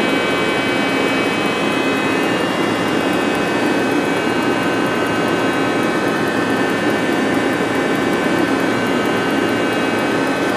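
Takisawa TC-4 CNC lathe running, a steady machine hum and rush with several constant high whines over it.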